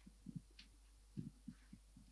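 Near silence: room tone with a faint low hum and about six short, faint low thumps scattered through it.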